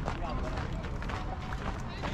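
Distant, untranscribed voices of people around the field, over a steady low rumble of wind on the microphone.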